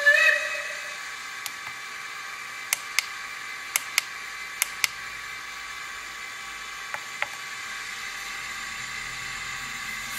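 Keypad buttons of a DSbluebox DCC command station clicking, several quick presses in pairs, after a brief pitched tone about a second long at the start. A faint low hum sets in near the end.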